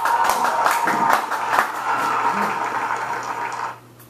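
Audience applauding, heard through room playback speakers, with a steady tone running under the clapping; it cuts off suddenly near the end.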